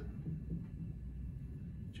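Steady low background hum of the room, with no distinct event.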